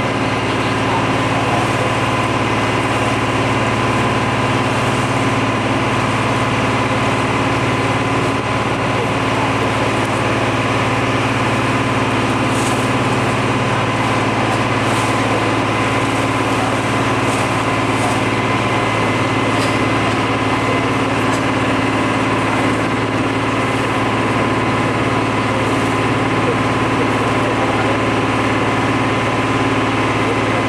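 Boat engine running steadily as the boat moves across the water: a loud, constant drone with a steady higher whine, heard from on board.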